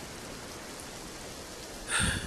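Steady rain falling, a rain ambience laid under the audio drama.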